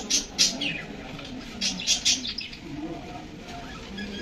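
Birds chirping in quick bursts of short high calls, about half a second in and again near two seconds, over a low murmur of voices.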